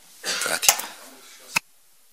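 A man clearing his throat close to a desk microphone, a rough burst lasting under a second, followed by a short sharp click about a second and a half in.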